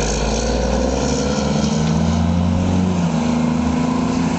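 Diesel engine of a motor grader ploughing snow, running steadily with its pitch rising slightly partway through, over a steady hiss of blizzard wind.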